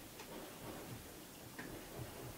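Faint rubbing of a fingertip blending oil pastel on the painting surface, with a few light, irregular clicks.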